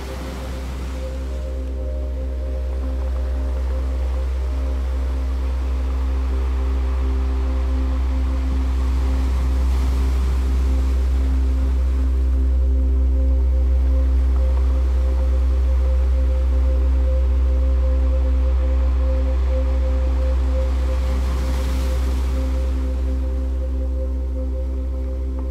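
Ambient meditation music: a deep, steady low drone under several sustained held tones, with a soft rushing noise that slowly swells and fades like surf. It grows louder over the first few seconds, then holds steady.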